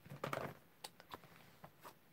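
Faint handling noise: a quick cluster of light clicks and rustles, then a few single clicks, as plastic stamp-set cases are picked up and moved on a desk.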